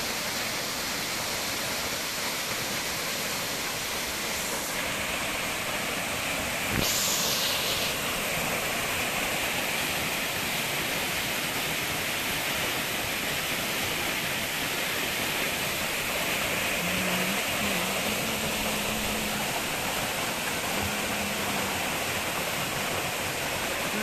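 Mountain waterfall rushing, a steady noise of falling water that grows brighter and a little louder about seven seconds in.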